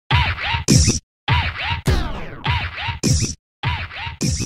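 Turntable-style scratching in short rhythmic bursts, each a quick back-and-forth swing in pitch. It breaks off twice for a moment, and a whoosh comes about halfway through.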